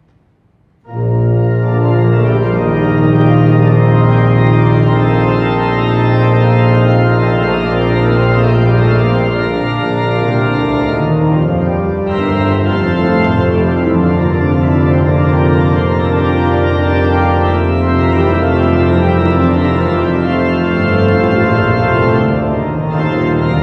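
1934 Aeolian-Skinner pipe organ starting to play about a second in, with loud sustained chords over deep bass notes, in a large reverberant cathedral.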